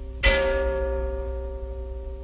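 Large clock-tower bell struck once, about a quarter second in, ringing on with a slowly fading hum.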